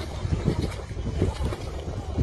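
Wind buffeting the microphone over splashing, sloshing water as a Labrador is hauled out of the water onto stone steps.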